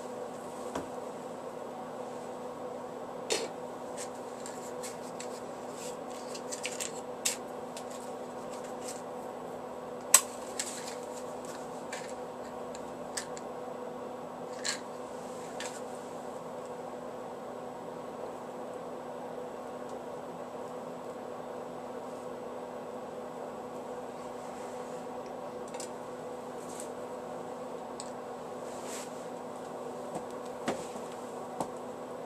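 Scattered sharp clicks and knocks of objects being handled on a wooden workbench, the loudest about ten seconds in, over a steady low hum.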